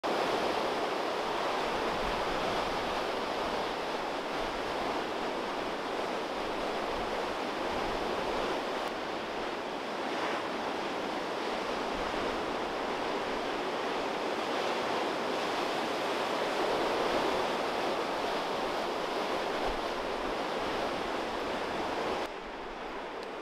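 Heavy storm surf breaking on a rocky shore: a continuous, steady rush of waves, with wind blowing over it.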